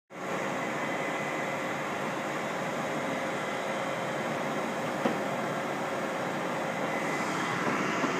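Steady outdoor background noise with a faint constant hum. It starts abruptly at the cut from black, and a single short click comes about five seconds in.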